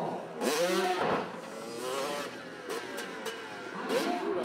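Motocross dirt bike engines revving in bursts that rise and fall in pitch, the loudest about half a second in.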